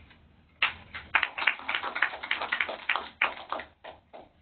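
Audience applauding: a small room of people clapping in a dense, irregular patter that starts about half a second in and dies away near the end.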